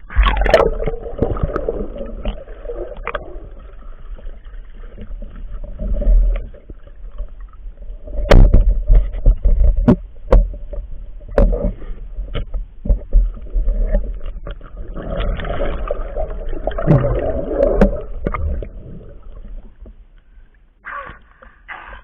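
River water sloshing and gurgling around a camera held at the water surface and dipping under it, with a low rumble and scattered sharp knocks against the camera housing, most of them in the middle of the stretch.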